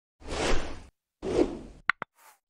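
Motion-graphics sound effects for an animated end card: two whooshes about a second apart, then a short, sharp pop near the end.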